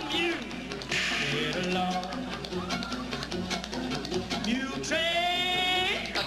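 Live stage band playing, with long held notes that slide down at the start and slide up and hold near the end, like race cars going by. Drum hits run through it, and a burst of crashing noise comes about a second in.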